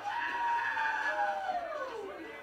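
A long, high scream from a horror film's soundtrack. It holds steady for about a second and a half, then slides down in pitch as it fades.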